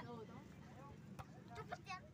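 Faint voices on a quiet outdoor field, with one short sharp click a little over a second in.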